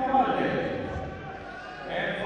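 Speech: a man's voice talking, quieter for a moment in the second half.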